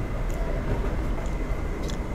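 Steady low rumble of restaurant background noise, with faint voices in it and a light click near the end.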